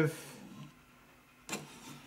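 Quiet room tone in a pause between words, broken by one short click about one and a half seconds in.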